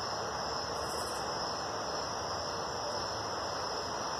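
Crickets trilling in one steady, unbroken high note, over a low background hiss.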